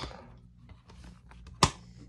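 Plastic DVD case being handled, with faint small clicks and one sharp snap about one and a half seconds in as the disc comes off the case's centre hub.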